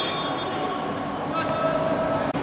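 Reverberant futsal-hall ambience: a steady murmur of indistinct voices echoing in the large indoor hall.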